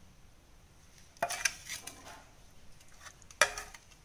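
Steel spoon scraping and clinking against a metal pot while scooping curry: a short clattering scrape a little past a second in, and a single sharper, louder clink near the end.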